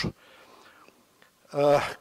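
A man speaking Serbian into a microphone breaks off. After a pause of faint room tone, his speech starts again about a second and a half in.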